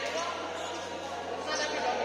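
Badminton rackets striking shuttlecocks, a few sharp hits echoing in a large sports hall, with players' voices mixed in.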